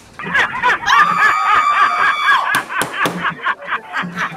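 A woman laughing hard, with quick bursts of laughter that break into a high, drawn-out squeal about a second in, then trail off into choppier giggles.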